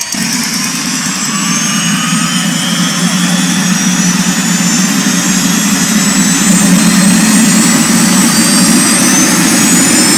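Jet-turbine motorcycle engine running with the bike standing still: a high turbine whine that climbs slowly in pitch and grows louder as the engine spools up, over a steady low drone.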